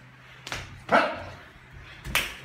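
A sharp slap, then a short, loud yelp just under a second in during slap-boxing play-sparring.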